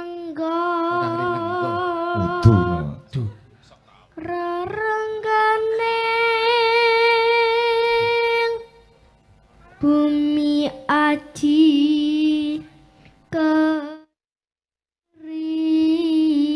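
A boy singing a slow Javanese tembang in the Pangkur metre as a solo voice, with long held, wavering notes, pausing briefly between phrases.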